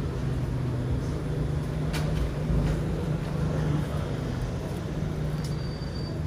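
Town-centre street ambience: a steady low hum with traffic-like noise, and one sharp click about two seconds in.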